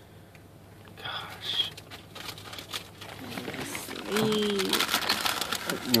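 Potato chip bag crinkling over and over as a hand rummages inside it for chips, starting about a second in. A short vocal sound comes partway through.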